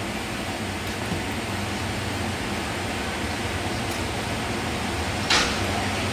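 Steady hum and hiss of an ice rink's air handling, with one short, sharp hissing scrape near the end.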